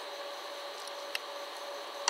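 Steady background hiss of room tone with a faint steady hum, and one faint click a little past a second in.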